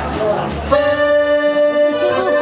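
Accordion starting a traditional folk dance tune with held chords less than a second in, after a brief stretch of hall noise.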